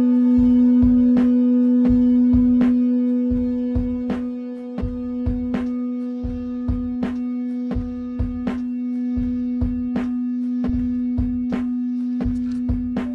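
Layered ambient electronic music from free-running loops: a steady low drone with sustained pad tones over it, and an uneven pulse of soft low thumps and clicks, roughly two a second.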